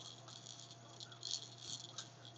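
Plastic toys hanging from a baby bouncer's toy bar rattling in irregular bursts as the baby grabs and kicks at them.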